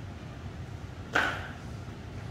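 Steady low room hum with one short, sharp knock about a second in that rings out briefly.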